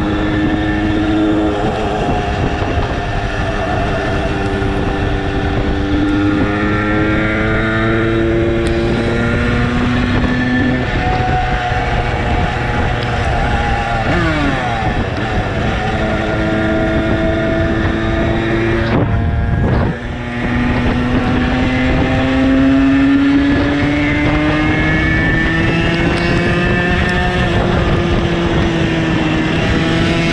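Zündapp 50cc two-stroke moped engine running under way. Its pitch climbs slowly and then drops several times, with a short dip in level a little under two-thirds of the way through, and wind buffets the microphone.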